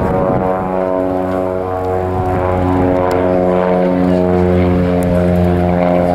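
Single-engine light aircraft's piston engine and propeller running at high power during take-off and climb-out, a loud steady engine note that shifts slightly in pitch a couple of times.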